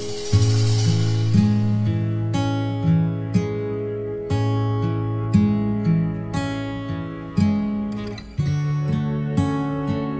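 Background music: an acoustic guitar playing a slow run of plucked notes, each starting sharply and fading.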